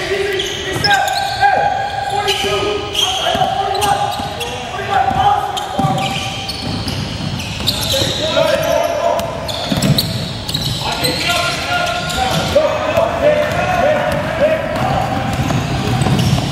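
Voices of basketball players and onlookers calling out during a game, echoing in a gym, with a basketball bouncing on the hardwood floor now and then.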